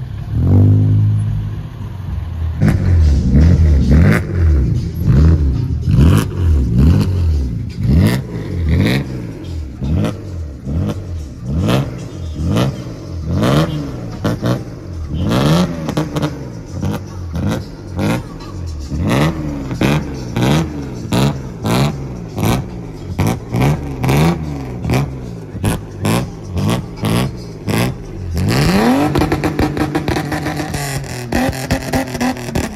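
BMW E30 3 Series engine revved hard in repeated blips, each a quick rise and fall in pitch, about one a second at first and quicker toward the end. Near the end it climbs and is held at high revs as the car starts spinning its rear tyres.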